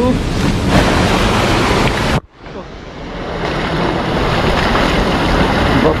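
Rushing water of a fast, rocky stream, a loud steady roar. It cuts out suddenly about two seconds in, then swells back to full level over the next couple of seconds.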